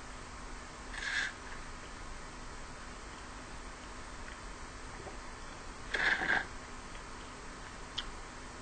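Two short slurps of yerba mate sucked through a stainless steel bombilla from a gourd, about a second in and again about six seconds in, over a faint steady hum.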